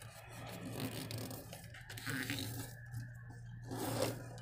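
A sheet of origami paper rustling and rubbing as it is folded diagonally in half by hand and the crease is pressed down, with a low steady hum underneath.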